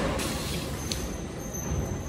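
A cardboard box set down and slid onto a metal roll cart, a brief scraping rustle at the start, followed by handling noise over a steady low rumble.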